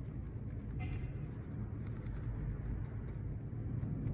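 Coloured pencil scratching steadily as it draws on a folded paper coffee filter.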